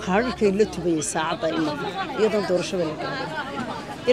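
A group of women chanting together in a repeated refrain, with hand clapping.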